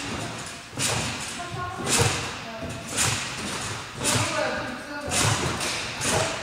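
A trampoline bed and its springs thumping at each landing as a child bounces steadily, about once a second.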